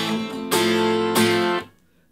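Acoustic 12-string guitar strumming an A minor chord with an added F (the minor-sixth note of a chromatic minor line), struck about three times and left to ring, then damped shortly before the end.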